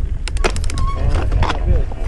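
Handling noise on a helmet- or body-mounted action camera: a quick run of sharp clicks and knocks in the first half second, over a steady low rumble, with brief voice sounds through the middle.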